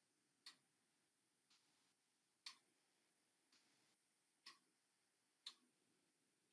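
Near silence broken by faint, sharp ticks at a steady pace of about one a second, some louder than others.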